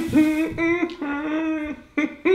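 A man humming a tune with his mouth closed: about four held notes in a row, each sliding up briefly at its start.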